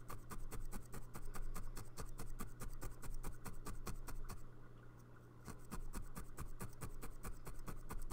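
Felting needle stabbing rapidly into wool roving on felt over a felting mat: an even run of short, sharp pokes, several a second, that stops for about a second just past halfway and then picks up again.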